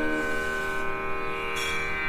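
Steady instrumental drone of many held pitches sounding on its own, the classical-style drone accompaniment left ringing after the singing stops.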